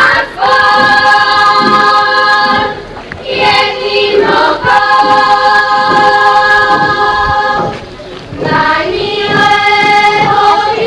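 Choir of a Slovak folk ensemble singing a folk song in long held phrases, with short breaks about three seconds in and again about eight seconds in.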